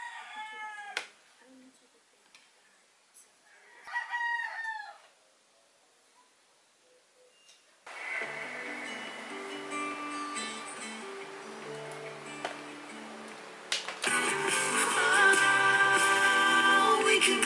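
A rooster crowing twice, two short falling calls about four seconds apart. Music then starts about halfway through and gets louder near the end.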